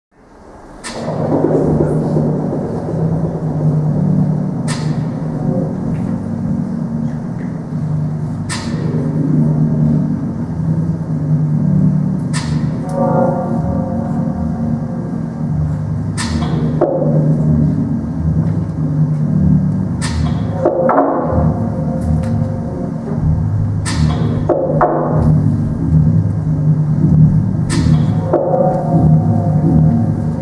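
Slow backing music for a contemporary dance, fading in over the first second. It has a low sustained drone and a sharp struck accent about every four seconds, with a large hall's reverberation.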